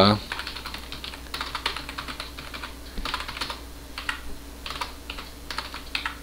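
Typing on a computer keyboard: irregular runs of quick keystrokes with brief pauses between them, as shell commands are entered.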